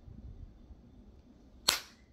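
A single sharp hand clap near the end, with low room noise before it.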